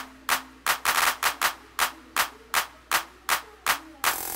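Sparse intro of a trap instrumental beat: one sharp percussion hit repeating about two and a half times a second. A quick roll of faster hits comes about a second in, over a faint held tone.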